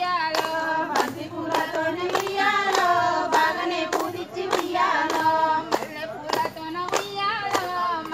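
Women singing a Bathukamma folk song together, with steady hand claps keeping time, a little under two claps a second.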